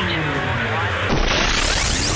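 Synthesized intro sound effect: falling gliding synth tones over a low steady hum, then from about a second in a noisy whoosh that sweeps steadily upward in pitch.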